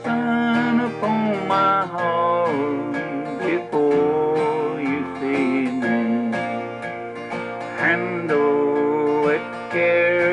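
A man singing a slow country song while strumming an acoustic guitar in a steady rhythm.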